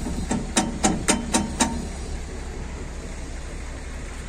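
Steel tie-down chain links clinking as the chain is handled, about six quick clinks over the first second and a half. After that only a steady low rumble remains.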